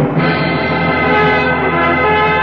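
Orchestral music bridge with brass, holding a sustained chord that swells in right after a shouted order.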